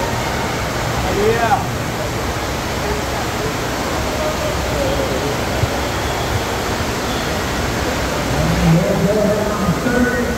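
Steady rush of water from a FlowRider double-jet sheet-wave machine, a thin sheet of water pumped at speed up over the curved padded riding surface. Voices call out over it now and then, most near the end.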